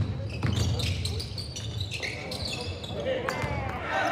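Live basketball game sound in a gym: a ball bouncing on the hardwood court, with short sneaker squeaks as players move.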